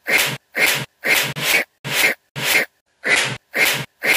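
A man's voice making short, breathy, hissing vocal bursts, about eight in a row, each cut off abruptly into dead silence by the editing, like a stuttering looped edit.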